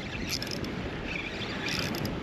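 Steady wind and water noise around a small boat on choppy open water, with a few faint higher rustles.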